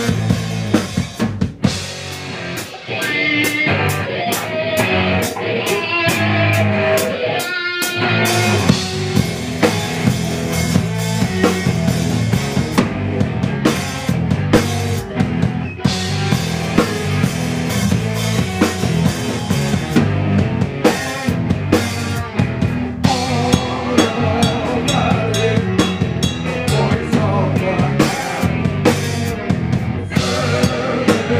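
A live rock band plays, with a drum kit (bass drum and snare) driving the beat under electric guitars. The band drops back briefly about two seconds in, then plays at full volume again.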